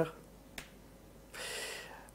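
The end of a man's spoken word, then a single faint click, likely a laptop key advancing the slide, and about half a second of breathy hiss as the speaker draws breath before talking again.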